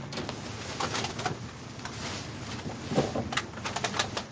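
Plastic trash bags crinkling and rustling with scattered sharp clicks as someone rummages through them inside a metal dumpster. A short, low, coo-like sound comes about three seconds in.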